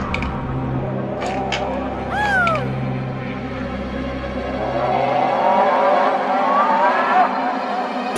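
Eerie horror-film sound design: a low steady drone that fades out about five and a half seconds in. Over it come a short falling cry about two seconds in and wavering rising tones from about five seconds.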